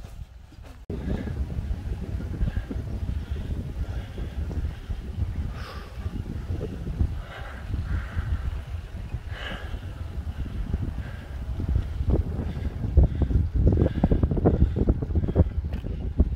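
Wind buffeting the microphone of a camera riding along on a road bike, a heavy low rumble that starts suddenly about a second in and grows louder near the end.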